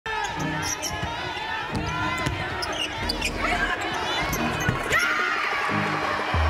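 Basketball game sound on a hardwood court: a basketball being dribbled in repeated sharp bounces, with short high sneaker squeaks, over arena voices.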